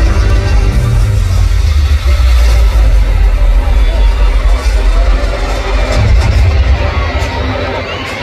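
Loud live pop music over a stadium sound system, heavy in bass, with audience voices and cheering mixed in.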